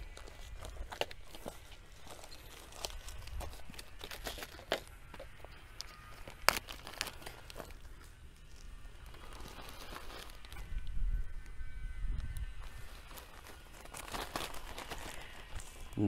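Clear plastic sample bag crinkling and rustling as it is handled and filled with soil, with scattered small crackles and taps, a sharp tick about six seconds in and busier rustling in the last third.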